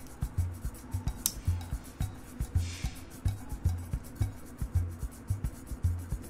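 Background music with a steady low beat, over faint rubbing and clicking of small plastic toy parts being pressed together by hand.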